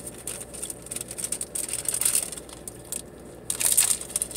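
A small wrapper crinkling and tearing as it is opened by hand: a run of quick crackles, with a brief lull about three seconds in.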